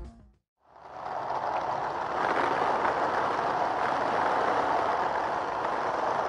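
Film soundtrack: music stops abruptly, and after a brief silence a steady, even rushing noise sets in and holds without change.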